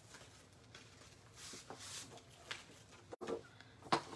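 Faint rustling and light taps of cardstock being handled and shuffled by hand, with a soft swish about a second and a half in.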